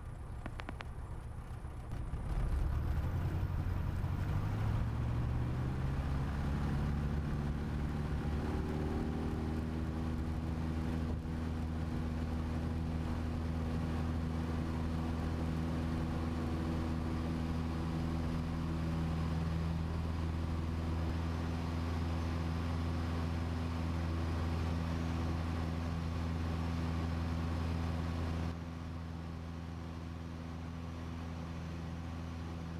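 Jodel DR1050's flat-four engine opened up to full take-off power, heard from inside the cockpit. A couple of seconds in it gets louder, its note rises over several seconds as it winds up, then it runs steady through the take-off run and lift-off. The level drops somewhat near the end.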